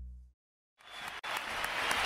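A song's last sustained notes fade out, then, after half a second of silence, applause and crowd noise rise, growing louder to the end.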